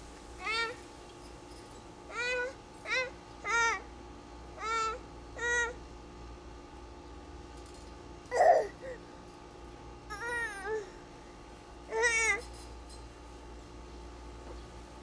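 A toddler's short, high-pitched vocal calls, about ten of them, each rising and falling in pitch, with a louder, rougher squeal about halfway through.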